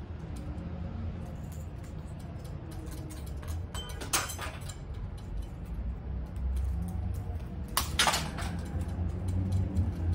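Light clicks and clinks of a thin metal strip and a pane being handled, with two louder scraping clinks about four and eight seconds in, over a steady low rumble.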